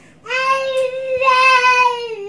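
A one-year-old child singing out loud: one long held note at a steady pitch, starting just after the beginning and sagging slightly near the end.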